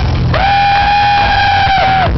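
Live Celtic rock band: the bass and drums drop back while one instrument holds a single long high note, sliding up into it about a third of a second in and falling off just before the band comes back in.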